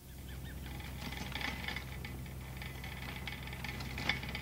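Steady low hum under a faint background, with light scattered rattles and clicks throughout.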